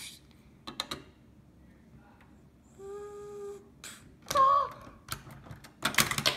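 Plastic Lego bricks of a Lego City Prison Island tower clicking and knocking as a hand works them: a few sharp clicks about a second in and again near the end. A steady hummed tone near the middle and a short voiced exclamation just after it, the loudest moment.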